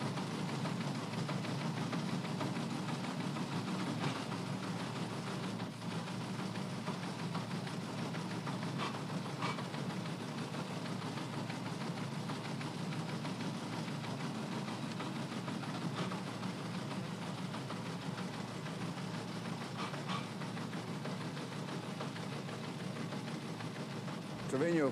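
Steady mechanical clatter of a teletype printer running continuously.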